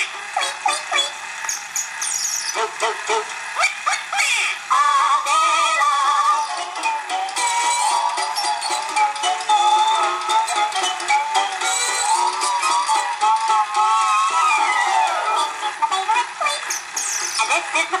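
A children's novelty 78 rpm record playing on a clockwork toy gramophone. The sound is thin and tinny with no bass, with clicks and crackle throughout. The music carries a wavering melody and a long falling glide in pitch near the end.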